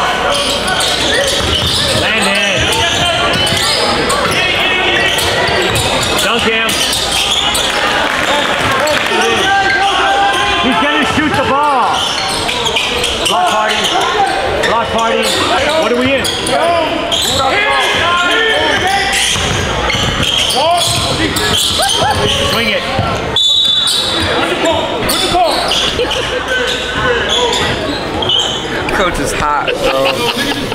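A basketball dribbling on a hardwood gym floor during play, with many voices from players and spectators echoing in a large gym.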